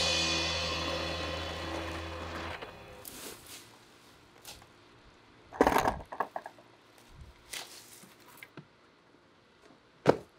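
A backing track's last chord rings out and fades over the first couple of seconds. Then come quieter scrapes and knocks as a person climbs over a cinder-block wall, with one loud clatter a little past halfway and a sharp thump at the very end as he lands.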